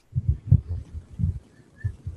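Several soft, low thuds at uneven intervals, like bumps or knocks near the microphone, with a faint short high beep near the end.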